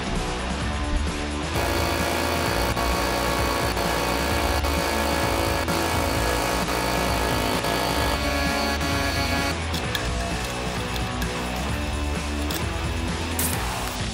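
Background rock music with electric guitar and a steady driving beat; the mix fills out about a second and a half in.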